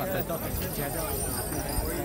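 Crowd of people talking at once, many voices overlapping, with scattered low thumps.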